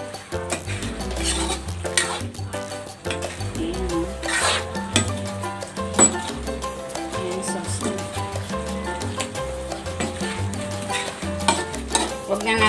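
Background music with a steady bass line over a metal ladle stirring and scraping chicken and pork adobo in an aluminium wok as the sauce reduces, with scattered light clinks against the pan. One sharp clink comes about halfway through.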